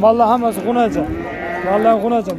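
A young calf mooing once: one long, slightly rising call held for about a second in the second half, after a burst of men's talk.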